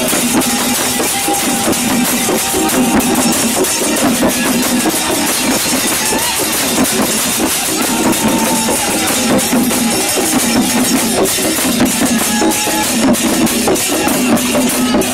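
A group of Newar dhime drums, large two-headed barrel drums, beaten with hands and sticks in a fast, dense, unbroken rhythm.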